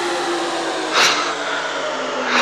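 Psytrance track intro: a steady, droning electronic tone with a sharp noise swish about a second in.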